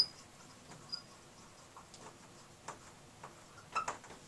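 Dry-erase marker writing on a whiteboard: faint taps and scratches of the pen strokes, with short high squeaks at the start and about a second in.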